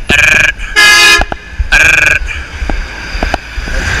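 Vehicle horns honking in street traffic: three short blasts within about two seconds, the middle one lower in pitch than the other two.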